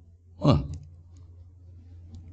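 A man's voice says a short "ha" about half a second in, followed by a few faint clicks over a low steady hum.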